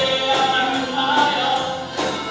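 Live band playing a song with sung vocals over acoustic guitar, electric guitar and drum kit, with a steady beat.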